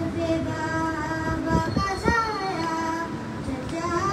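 A boy's voice chanting a noha, the Shia lament sung without instruments, in long held notes that bend downward at the end of each phrase, amplified through a microphone.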